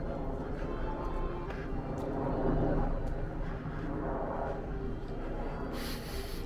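Outdoor ambience of a busy open park: a steady murmur of distant voices with faint music underneath.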